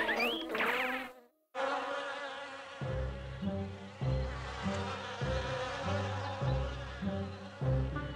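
Cartoon bee swarm buzzing sound effect, steady after a short break about a second in, with a soft, regular low beat under it from about three seconds in.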